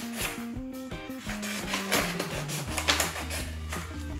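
Scissors snipping through a sheet of coloured paper, a few separate cuts, over steady background music.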